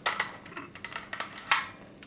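Hard plastic parts of a Kenner M.A.S.K. Switchblade toy clicking as it is handled and converted into helicopter mode: a few small, sharp clicks, the loudest about one and a half seconds in.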